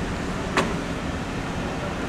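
Inside a car's cabin while it drives slowly: a steady low rumble of engine and road noise, with one brief click about half a second in.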